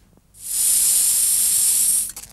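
A loud, steady, high-pitched hiss that starts about half a second in and cuts off suddenly.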